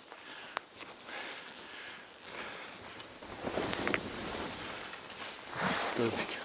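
Skis sliding through deep powder snow, a soft swishing hiss that swells twice, once around the middle and again near the end.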